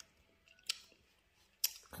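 Mouth sounds of someone chewing a piece of elai fruit: two short, sharp clicks a little under a second apart, otherwise quiet.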